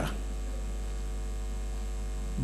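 Steady low electrical mains hum with faint higher overtones, picked up through the microphone and sound system.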